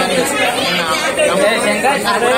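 A man speaking steadily, with no other sound standing out.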